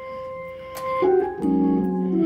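Organ music: a single held note, then about halfway through a fuller chord comes in over a low bass note.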